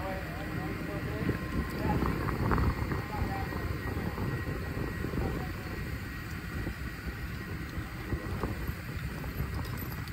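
Construction-site background noise: a steady low rumble, with faint distant voices in the first few seconds.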